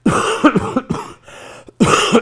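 A man coughing into his fist: a run of harsh coughs at the start, and another coughing burst near the end.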